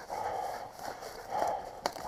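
Footsteps crunching over frosty crop stubble in two soft rustling patches, with a sharp click near the end.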